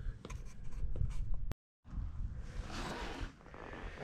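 Hand work on an angle-iron brace and its bolt, set against a wooden pallet: small metal clicks and a scraping rub. The sound cuts out completely for a moment about a second and a half in, then returns as a rasping scrape.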